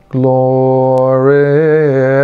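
A man's unaccompanied voice chanting a Coptic hymn, holding one long vowel on a steady note that turns in a short wavering ornament about a second and a half in.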